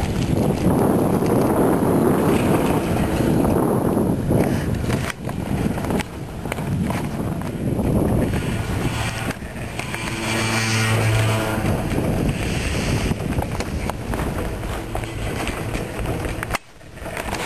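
Chairlift ride: wind buffeting the microphone over the rumble of the lift, with a brief steady hum about ten seconds in as the chair passes a lift tower.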